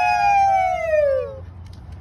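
A woman's long, high "woo!" cheer, held steady for over a second, then falling in pitch and trailing off about a second and a half in.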